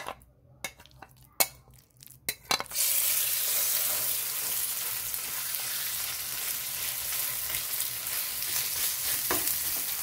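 Small gram-flour-coated marinated fish dropped into hot oil in a pan, sizzling steadily while a spatula spreads them out. The first couple of seconds hold only a few clicks and taps of the bowl and spatula against the pan; the sizzle starts suddenly about three seconds in.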